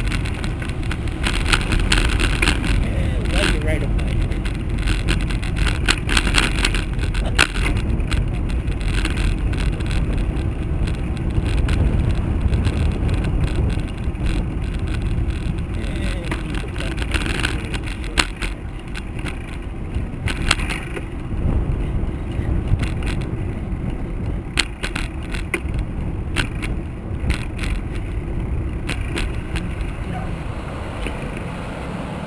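Steady low rumble of a bicycle rolling along the road, with wind on the bike-mounted camera's microphone, and frequent short rattles and knocks as the bike goes over bumps. Cars queued alongside in slow traffic add to the rumble.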